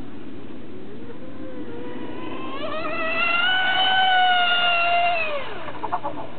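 RC model speedboat's motor running at speed with a high whine, rising in pitch and growing louder about two seconds in, holding loudest for a couple of seconds, then dropping sharply in pitch near the end.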